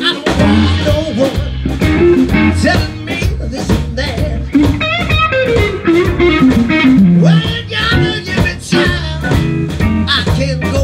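Live blues band playing: electric guitar over organ and drums, with a run of notes falling in pitch around the middle.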